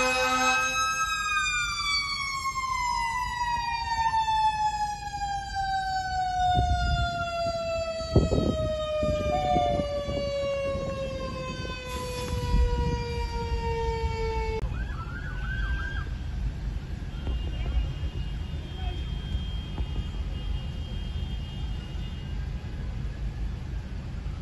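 Fire engine's mechanical siren winding down, its pitch falling slowly and steadily for about thirteen seconds before it cuts off. A sharp knock comes about eight seconds in. After that there is low traffic noise with a short rising siren chirp.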